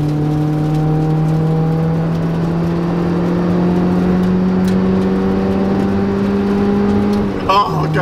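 1994 Mazda Miata's 1.8-litre four-cylinder engine pulling under steady throttle, heard from inside the cabin, its revs rising slowly and evenly. Near the end the revs drop sharply, as at an upshift.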